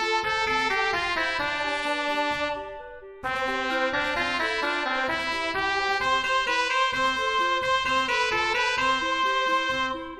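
MuseScore 3 computer playback of a ballad score in C for voice, trumpet and clarinet, with brass-like held notes over clarinet arpeggios. About two and a half seconds in the music fades away, then it starts again suddenly just after three seconds.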